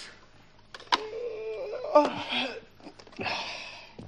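A person's wordless vocal sounds: a drawn-out wavering, voice-like note, then a sharp click about two seconds in, and a short breathy hiss near the end.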